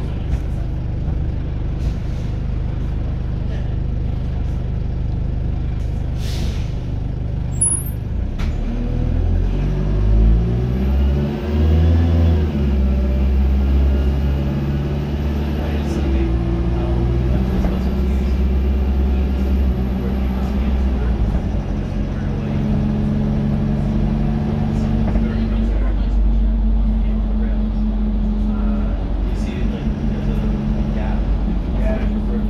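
Dennis Dart SLF single-deck bus's diesel engine, heard from inside the saloon, idling steadily, then about eight seconds in revving up as the bus pulls away, its pitch climbing and dropping back through the gear changes before settling into a steady run. A short hiss of air, typical of the brakes being released, comes just before it moves off.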